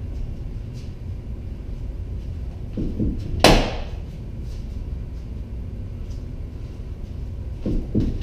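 A single sharp crack of a rattan sword striking a padded pell post about three and a half seconds in, with a couple of softer knocks just before it, over a low steady rumble.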